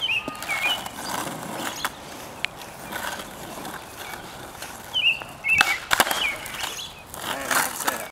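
Skateboard wheels rolling on asphalt, with sharp clacks of the board: single clacks around two seconds in, then a pair about half a second apart about two-thirds of the way through, typical of a nollie's pop and landing.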